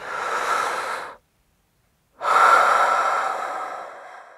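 Two heavy breathy exhales, like sighs: one lasting about a second, then after a short silence a longer one that starts sharply and fades away.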